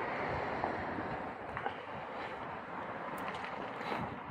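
Steady outdoor background noise: an even hiss, with a few faint ticks.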